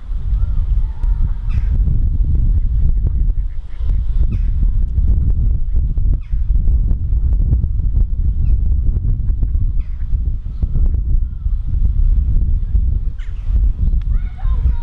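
Gusty low rumble of wind on the microphone, with a few short calls from water birds scattered through it.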